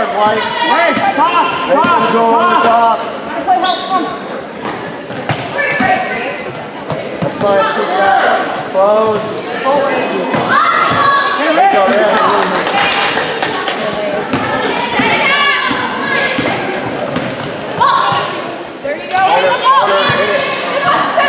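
A basketball game in a gym that echoes: the ball dribbles on the hardwood floor, sneakers squeak in short high chirps, and players and spectators shout and call out all the way through.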